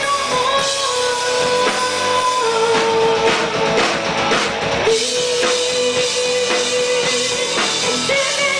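Live rock band playing, with drum kit and electric guitars and long held notes over the band.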